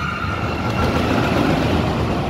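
Pendulum thrill ride swinging its ring of seats past at speed: a heavy rumble of machinery and rushing air that swells to a peak past the middle and then starts to fade.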